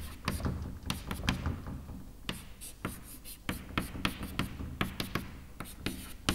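Chalk on a blackboard: quick, irregular taps and short scratchy strokes as lines and rings are drawn.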